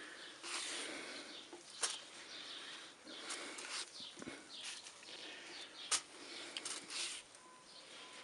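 Paper towel wiping oil across a metal plancha plate in repeated swishing strokes, with a couple of sharp clicks between them.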